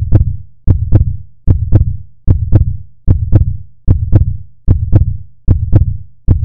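Heartbeat sound effect: a steady lub-dub double thump, low and heavy, repeating at about 75 beats a minute.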